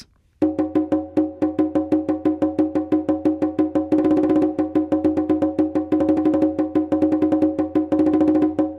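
Pitch Innovations Rhythm Box plugin playing a fast, shifting rhythm of short pitched percussive notes, the pattern generated by its random shape. It starts about half a second in.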